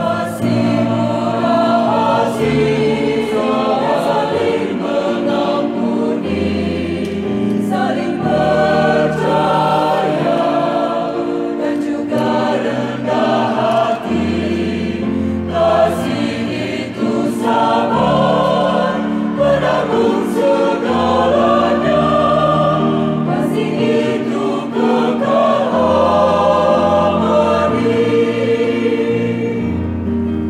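Mixed choir of women and men singing a Christian choral song in parts, with sustained low accompaniment from a Kawai electronic keyboard.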